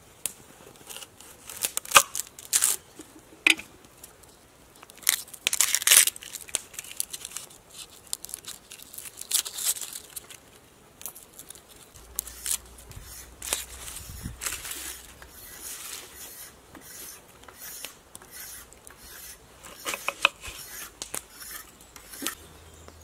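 An onion being cut with a knife on a wooden chopping board and its dry, papery skin peeled and torn off by hand. It gives a run of irregular, crisp cuts, tears and crackles, loudest in the first half.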